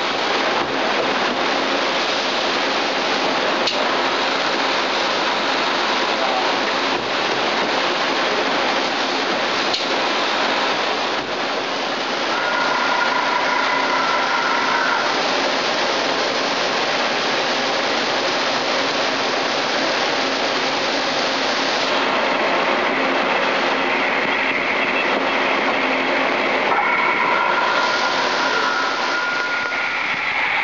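Steady, loud, hiss-like noise of running shop machinery, with faint high whining tones that come and go about halfway through and again near the end.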